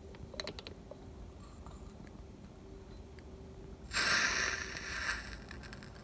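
An ice-filled glass bottle, used as the cold surface for subliming iodine, is lifted off a hot beaker. There are a few light clicks, then about four seconds in a loud scraping rustle of about a second as it comes away.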